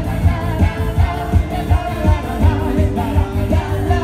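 Live pop cover band playing loud, with a woman singing over a steady driving beat.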